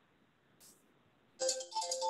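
Near silence, then about one and a half seconds in a melody of short, steady electronic notes starts suddenly.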